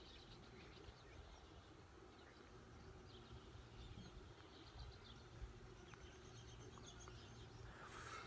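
Near silence with a faint low background hum and a few faint bird chirps.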